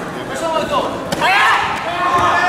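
A single sharp impact about a second in, a kick striking a taekwondo trunk protector, amid voices in a large hall.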